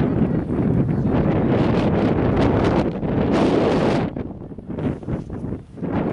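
Wind blowing across the camera microphone, loud and gusting, easing briefly about four seconds in before picking up again.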